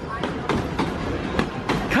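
Wildlife Express narrow-gauge train passenger cars rolling past close by, a low rumble with irregular clacks of the wheels on the track.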